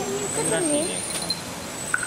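Common marmoset phee calls: thin, very high whistles that rise slightly in pitch, one lasting over a second and another beginning near the end, with people talking.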